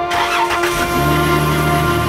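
A minivan's engine cranking briefly and catching about a second in, then idling with a steady low hum, under background music.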